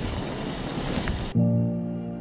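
Wind noise on the microphone, cut off suddenly a little over a second in by background music: a held chord of steady tones.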